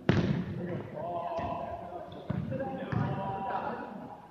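Dodgeballs hitting hard in a gym: one sharp loud smack right at the start, then two more about two and three seconds in, with players' voices calling and shouting throughout.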